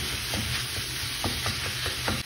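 Minced pork and vegetables frying in a pan with a steady sizzle, while a wooden spatula breaks up the meat with irregular scraping knocks against the pan, several a second.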